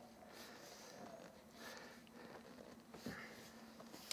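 Near silence, with faint rustling of a leather seat cover being pulled and tucked by hand over seat foam, and one short knock about three seconds in.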